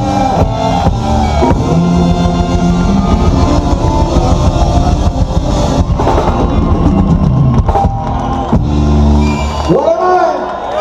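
Live ska band playing an instrumental passage on drum kit, bass, electric guitar and horns, with a steady driving beat and a held low chord near the end.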